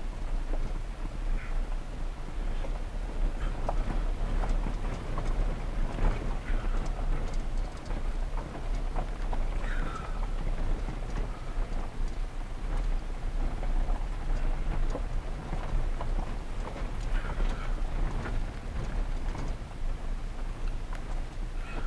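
Inside a vehicle driving slowly on a rough dirt and gravel road: a steady low rumble with scattered crackles and clicks of stones under the tyres.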